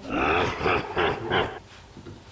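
A man laughing in about three breathy bursts, fading out about a second and a half in.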